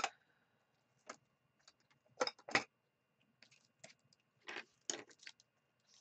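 Irregular light clicks and clatters of small hard objects being handled and set down on a desk: a sharp click at the start, a couple of knocks about two seconds in, and a loose run of ticks in the second half.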